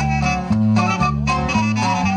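Live band playing dance music: a bass line stepping between notes about twice a second under a reedy lead melody and guitars.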